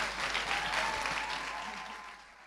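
Audience applauding, with faint voices in the crowd; the clapping fades out near the end.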